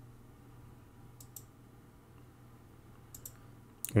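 A handful of faint, sharp clicks over a low steady hum: a pair about a second in and a few more after three seconds.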